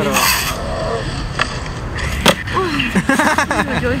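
Skateboard rolling on concrete, with two sharp clacks of the board about a second and a half and two and a quarter seconds in.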